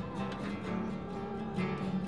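Acoustic guitar being strummed, its chords ringing, with a fresh strum near the start and another about a second and a half in.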